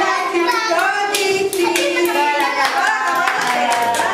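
Group of young children and a woman singing, with hand claps coming through every half second or so.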